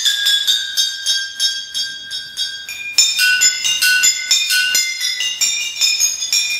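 A row of green glass beer bottles struck in quick, uneven succession, each ringing with its own bright pitch. One note rings on for nearly three seconds from the start under the rapid strokes, and a hard strike about halfway through starts a new run.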